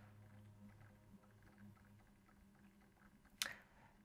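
Near silence: faint room tone with a low steady hum, and one brief soft noise near the end.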